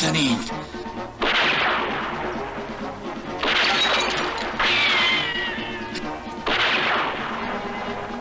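Film battle sound effects: four sharp rifle shots a second or two apart, each dying away over about a second. One is followed by a falling, whining tone, like a bullet ricochet.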